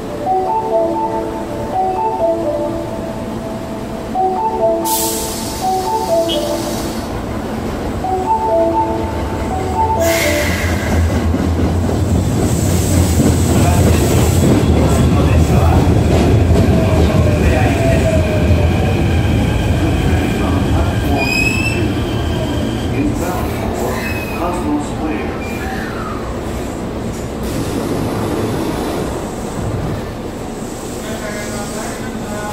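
A platform chime melody plays in short repeated phrases for the first ten seconds. Then an Osaka Metro train pulls out of the station: its running rumble builds to its loudest around the middle, rising whines come through as it picks up speed, and it fades toward the end.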